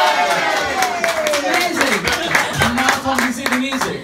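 A small audience clapping, with voices calling out over it, one long falling call at the start.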